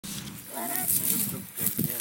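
A young horse trapped at the bottom of a dry well making short distressed calls, mixed with people's voices.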